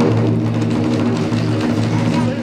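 Chinese lion dance percussion: a loud drum stroke with crashing cymbals right at the start, the sound ringing on until the next stroke about two seconds later.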